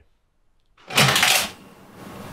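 Near silence, then about a second in a single short, loud rushing burst of noise lasting under a second, which fades into a low hiss.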